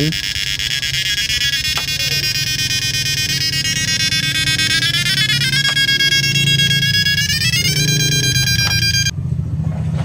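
High-pitched electrical whine from a homemade Arduino-controlled IGBT driver switching a 1000-watt heater-tube load. The whine is made of several tones together and steps up in pitch a few times as the duty cycle changes, then cuts off suddenly about nine seconds in. A steady low hum runs underneath.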